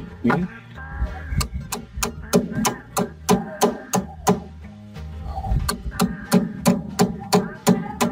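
Hand hammer striking a steel chisel to chip very hard set cement off the top of a concrete-block wall: regular sharp blows about three a second, with a short break about halfway through. Background music plays underneath.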